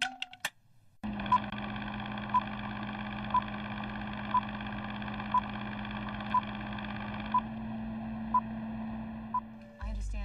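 Film countdown leader sound effect: a short, clear beep once a second, nine in all, over a steady low hum and hiss that drops away near the end.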